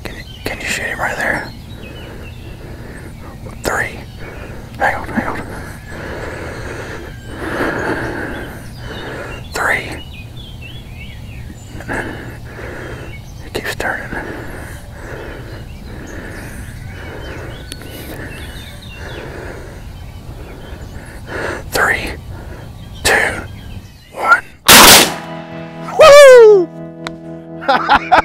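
Two shotgun blasts about a second and a half apart, very loud and sudden, as both hunters fire at strutting wild turkey gobblers for a double.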